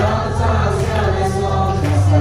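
A group of young men and women singing together into handheld microphones over a backing track with a steady bass line.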